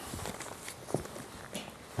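Faint rustling and a few light knocks of handling as a fabric blood-pressure cuff is wrapped around an upper arm.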